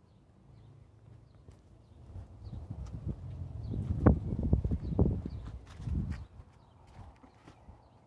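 A run of low thumps and rumble close to the microphone, building from about two seconds in, strongest around four and five seconds, and fading by about six seconds.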